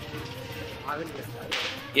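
Faint voices in the background, then a short hiss about three-quarters of the way through.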